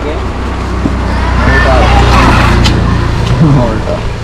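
A motor vehicle passing by on the road, its low engine rumble and tyre noise building to a peak about two seconds in and then fading away.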